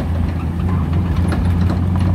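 Car engine running in a steady low drone with road noise while the car drives along, heard from inside the cabin.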